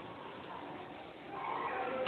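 Faint steady background noise in a pause between spoken phrases, growing slightly louder near the end.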